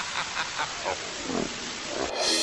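Television static hiss with faint wavering, distorted warbles running through it, used as a glitch transition sound effect.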